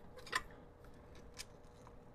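Cast aluminium tortilla press being closed and pressed: a sharp metal click about a third of a second in, a fainter click about a second later and a few light ticks, over a faint steady hum.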